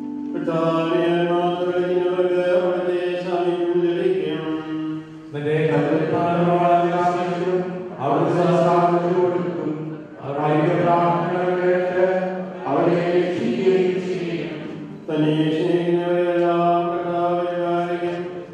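Liturgical chant sung by voices in unison, in phrases of a few seconds each with short breaths between them.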